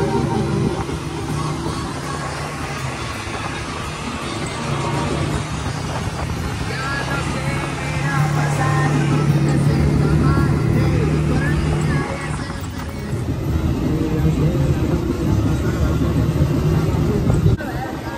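Side-by-side UTV engine running steadily while driving off-road, mixed with background music.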